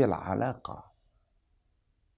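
A man speaking a few words in a small room, then pausing in near silence for about a second.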